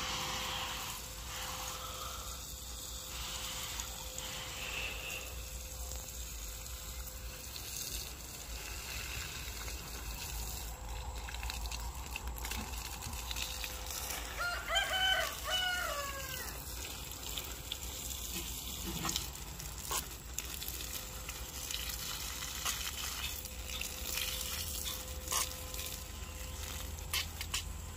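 Water spraying from a garden hose nozzle onto vegetable beds, a steady hiss. A rooster crows once about fifteen seconds in, the loudest sound.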